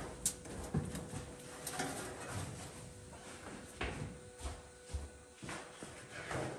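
Scattered light knocks and clunks of someone moving about a workshop and handling materials, about seven separate hits, over a faint steady hum.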